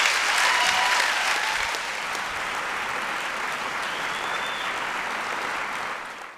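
Audience applauding, a little louder in the first second and a half, then steady.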